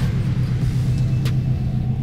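2005 Subaru WRX's flat-four engine idling steadily with a low, even rumble, and a single click about a second in.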